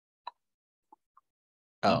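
Three faint, short clicks of computer keyboard keys, heard through a video-call feed with silence between them, then a man says "Oh" at the end.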